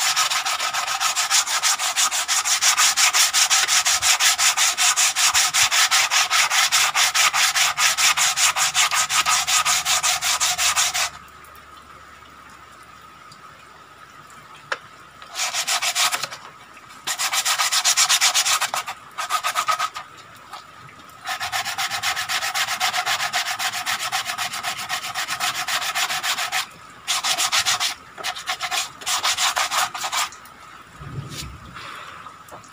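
Hand sanding a wooden parang sheath: fast back-and-forth rubbing strokes that stop for a few seconds about a third of the way in, then return in several separate bursts.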